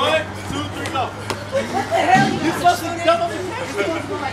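Overlapping chatter and calls from several young people in a large room, with a few sharp knocks among the voices.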